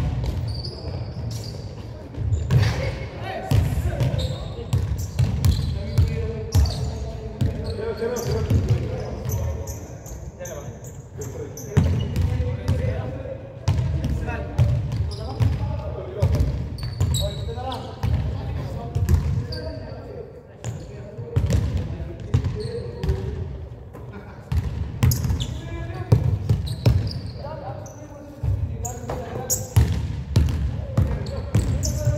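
Basketball bouncing on a hardwood gym floor during a pickup game, a series of sharp, irregular knocks, with players' voices calling out in a large, echoing gym.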